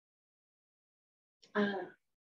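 Silence for about a second and a half, then a short burst of a person's voice starting near the end, heard over a video call.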